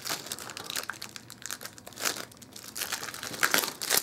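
Clear plastic shrink wrap being torn and peeled off a tin lunchbox by hand, crinkling in irregular crackles, with a few louder rips about halfway through and near the end.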